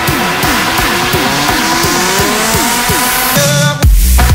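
Electro house build-up in a DJ mix: rapid falling synth notes, about four a second, over a slowly rising synth sweep and noise riser. It breaks off briefly near the end before a loud bass drop hits.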